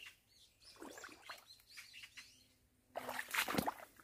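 Small birds chirping in short falling notes. About three seconds in comes a louder burst of crackling rustles, leaves and branches being handled.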